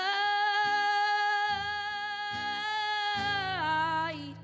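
A boy singing one long held note with acoustic guitar chords strummed underneath; near the end the note slides down in pitch.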